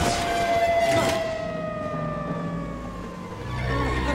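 Film sound effects of futuristic airspeeder traffic: engine whines sliding slowly down in pitch as vehicles pass, with a whoosh at the start and another about a second in. A low engine rumble builds in the second half.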